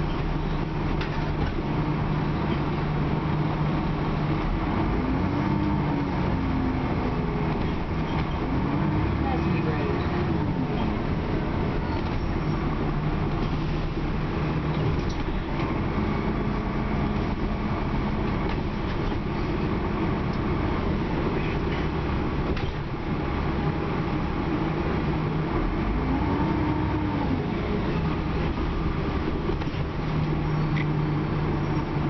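Cabin noise of a 2001 Dennis Trident double-decker bus on the move: the diesel engine and drivetrain drone steadily, with a low hum that shifts pitch in steps. Three short rising-then-falling whines come through.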